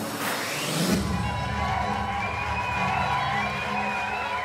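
Live stage music drops its beat with a rising swell in the first second, then holds a sustained low chord while the audience cheers.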